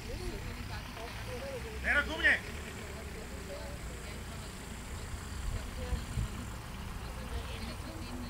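A loud shouted command to a working dog, two quick syllables about two seconds in, over a steady low rumble of wind on the microphone.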